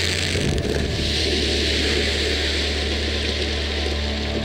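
A rock blast: explosive charges detonating in a drilled rock bench. The blast starts with a sudden burst of noise, then a loud, sustained rushing rumble that eases near the end, with background music underneath.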